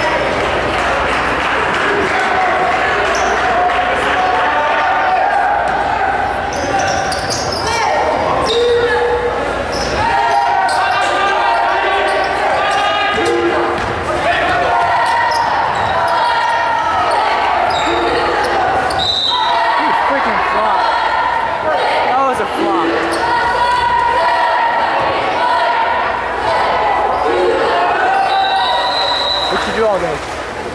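Basketball game noise in a school gym: a ball bouncing on the hardwood under continuous overlapping chatter from spectators, echoing in the large hall.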